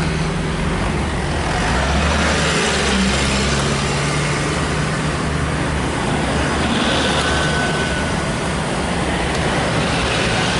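Motor vehicles, a van and a pickup truck, passing close by on the road: a steady low engine hum under a loud even rush of tyre and road noise.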